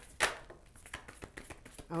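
A deck of oracle cards shuffled by hand: a loud card snap about a quarter second in, then a run of light, quick card clicks.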